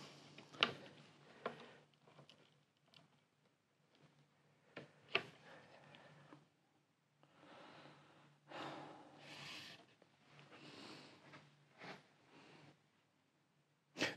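Very quiet workbench with a low steady hum and a few faint small clicks from handling the bass neck, the loudest about five seconds in. Several soft breaths follow in the second half.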